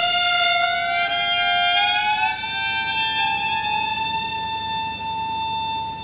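Solo violin playing one long bowed note that slides slowly upward over the first two seconds or so, then holds steady at the higher pitch.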